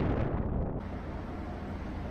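The last of an intro jingle dying away in the first second, then a steady low rumble of outdoor background noise.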